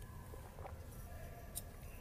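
Faint ice-arena background: a low steady hum with a few faint distant knocks and a brief click near the end.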